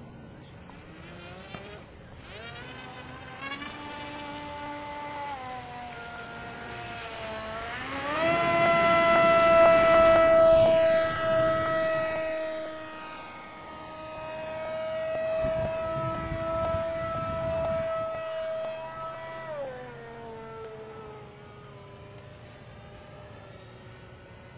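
Radio-controlled flying boat's electric motor and propeller whining as it takes off from the water, climbing in pitch in steps as the throttle opens, then loudest for several seconds as the plane lifts off and flies past. The pitch falls near the end.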